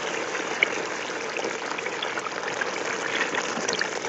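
Tomato-and-pepper sauce sizzling and bubbling in a pot while it is stirred: a steady hiss with scattered small crackles.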